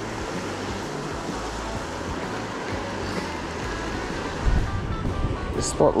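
Small river rapids running over boulders into a pool: a steady rush of water, with music playing underneath. A low rumble of wind on the microphone comes in about four and a half seconds in.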